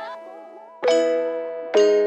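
Background pop music: a sung line fades out at the start, then keyboard chords are struck twice, about a second in and near the end, each ringing and dying away.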